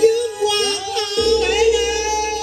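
A high voice singing a cải lương (Vietnamese reformed opera) phrase over band accompaniment, settling into a long held note about a second in.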